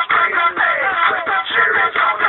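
A song with a singing voice whose pitch glides and bends, playing on the car radio.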